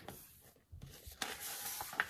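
Paper pages of a paperback picture book rustling as a page is turned, starting under a second in, with a sharp tap near the end.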